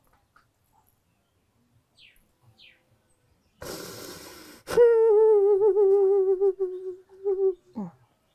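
A woman weeping aloud: a long, noisy intake of breath about three and a half seconds in, then a wavering wail held near one pitch for about three seconds, ending in a short sob that falls in pitch.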